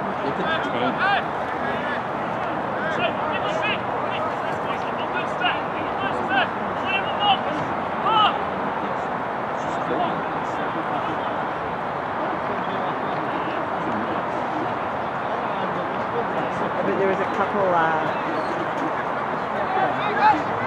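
Indistinct shouts and calls from soccer players on the pitch, scattered over a steady background hiss of outdoor noise.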